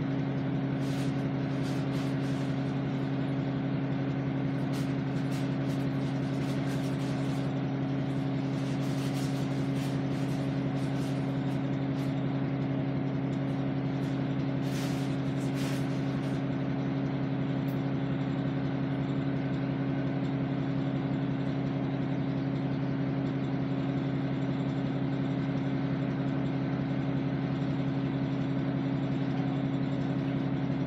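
Engine of a stopped vehicle idling, heard from inside the cab: a steady low hum, with a few light clicks and rattles in the first half.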